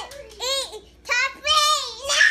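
A toddler's high-pitched, sing-song vocalizing: three short calls that rise and fall in pitch.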